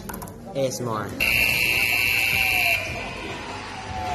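An electric buzzer sounds one loud, steady, high tone for about a second and a half, then cuts off.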